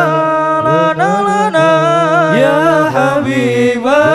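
Male voices of a hadroh group chanting an Islamic devotional song together through microphones and a PA system. They hold long notes with slow sliding ornaments, and there are no drums.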